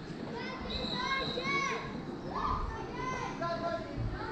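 Children's voices calling out and talking over one another, high-pitched, in a large gym.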